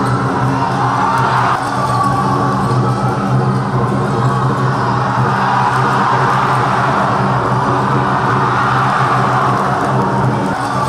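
A steady low droning tone, held at one pitch throughout, over the noise of a crowd in a sports hall.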